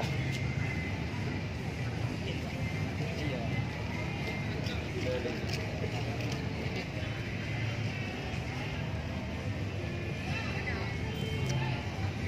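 Busy outdoor crowd ambience: a steady background of distant voices and faint music over a low hum.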